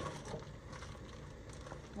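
Soft crinkling of zip-top plastic bags of meat being handled in a refrigerator drawer, a few faint rustles over a low steady hum.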